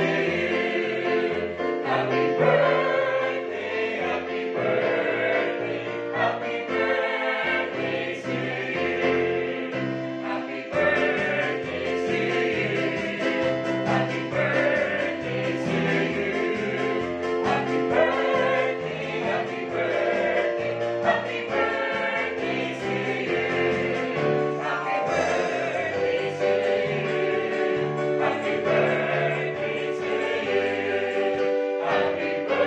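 Small mixed choir of men's and women's voices singing together in harmony.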